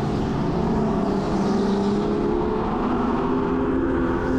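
Go-kart motor heard from a camera mounted on the kart, running steadily at speed with a continuous drone and track noise.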